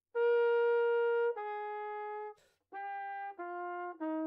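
Trumpet playing a slow phrase of four held notes, each stepping down in pitch, the first the loudest and held about a second. About two seconds in the line breaks for a quick snatched breath, taken at the sides of the mouth with the mouthpiece kept on the embouchure, before the descent carries on.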